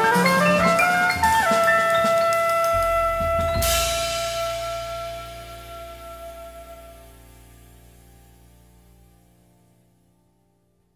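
Acoustic jazz band ending a tune: a quick rising run climbs into a long held note over a sustained bass note, a cymbal crash comes about three and a half seconds in, and the final chord rings and fades away to silence near the end.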